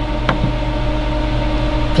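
Steady machine hum with a single click about a third of a second in, as the selector knob on the welder's front panel is pressed to confirm a setting.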